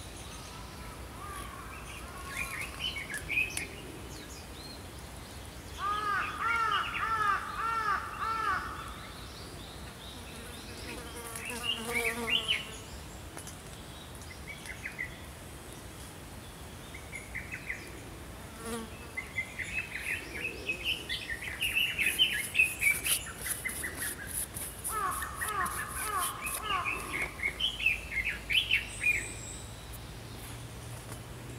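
Small songbirds singing, with several phrases of quickly repeated arching whistled notes, the fullest runs about a quarter of the way in and again near the end. A fast, dry ticking joins in for a couple of seconds past the middle.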